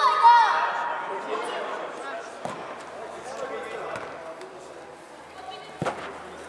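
Shouts from players and spectators in a large indoor hall, loudest in the first second, then a few separate thuds of a football being kicked on artificial turf, the sharpest just before the end.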